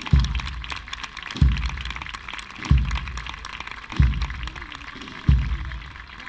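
A procession band's bass drum beating a slow, steady march, about one stroke every 1.3 seconds, over the noise of a large crowd.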